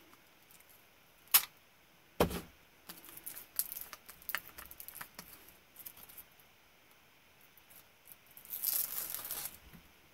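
Small paper sticker being handled and its backing peeled off: a sharp click and a dull knock early on, light paper rustles, then a longer rustling tear near the end.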